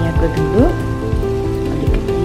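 Tomato masala sizzling and crackling in a hot aluminium kadai, with background music of held notes playing over it.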